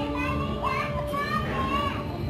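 High-pitched children's voices calling out and playing, over a steady low background rumble.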